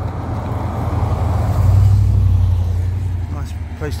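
A motorhome driving past close by: a low engine and tyre rumble that swells, is loudest about two seconds in, then fades as it pulls away.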